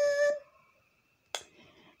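A woman's voice holding one steady note, like a drawn-out hum or sung vowel, that stops about half a second in. Then near silence, broken by a single sharp click a little past the middle.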